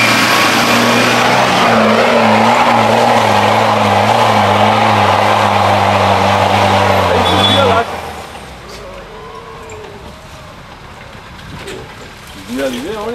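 Land Rover 4x4 engine running loud and steady close by, a deep even hum. About eight seconds in the sound drops abruptly to a much quieter, more distant engine and outdoor noise.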